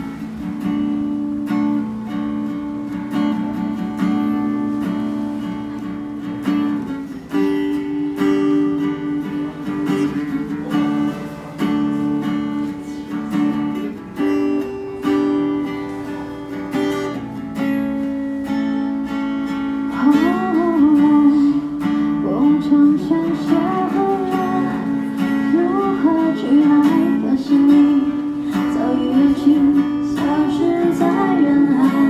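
Acoustic guitar strummed as a song's introduction. About two-thirds of the way through, a woman's singing voice comes in over the guitar.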